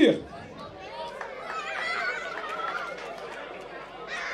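A hall full of children chattering, many high voices overlapping.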